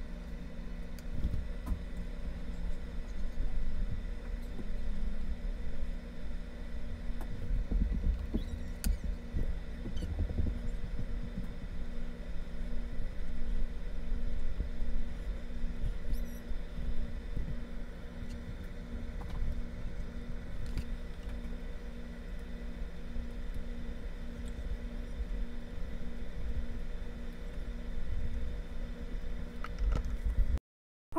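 Soft brushing and light taps of a paintbrush on a stretched canvas, over a steady low rumble and hum in the room.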